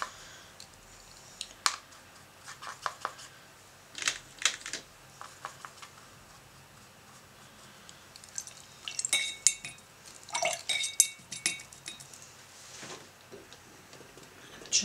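Paintbrush clicking and tapping against a plastic watercolor palette while mixing paint: scattered sharp clicks in small groups, with a run of brighter, briefly ringing clinks around the middle.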